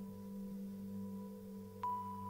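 A steady drone of several held tones, low and mid-pitched, with no decay, and a faint tap near the end after which the highest tone sounds a little stronger.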